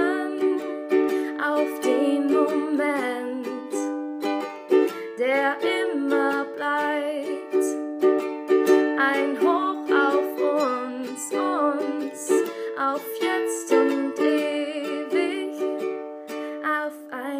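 Ukulele strummed in a steady rhythm of chords, with a wordless sung melody over it.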